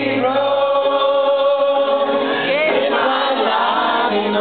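Live pop-rock band playing, with a lead vocal holding a long sung note and sliding to new notes about two and a half seconds in. The sound is dull, cut off in the highs.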